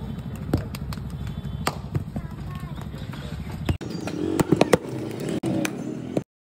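Floury hands slapping and clapping together in sharp, irregular smacks over background chatter and a steady low rumble, which drops out about four seconds in.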